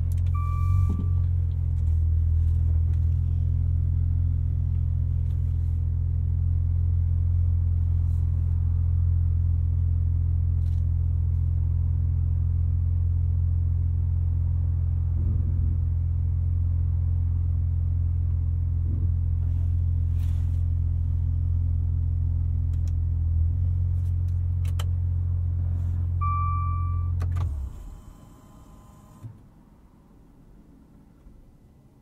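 Maserati Levante GranSport's twin-turbo V6 idling steadily with a low hum, heard from the driver's seat. A short electronic chime sounds just after the start and again near the end. The engine then shuts off abruptly, leaving only a few faint clicks.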